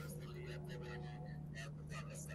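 Faint background of a crowd's distant voices and street noise under a steady low electrical hum.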